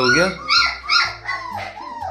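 Young German Shepherd puppies, about three to four weeks old, giving short high-pitched yips and whines, about four cries in quick succession, as they play-fight.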